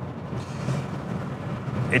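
Steady in-car driving noise from a BMW M850i Cabriolet cruising at about 50 km/h: a low rush of road and wind noise with its 4.4-litre V8 running gently underneath.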